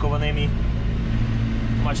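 Tractor engine running steadily under load, heard from inside the cab as an even low drone, while it tows a slurry tanker spreading liquid manure.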